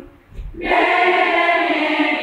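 A small group of women singing a hymn together in a chapel. They break off for a short breath just after the start, then come back in on long held notes.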